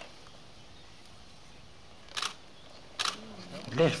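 Two short, sharp clicks a little under a second apart over faint background hiss, followed by a man's voice starting near the end.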